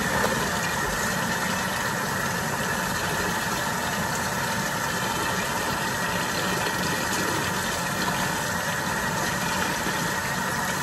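Water running steadily from a kitchen faucet into the sink at full flow, an even rushing sound.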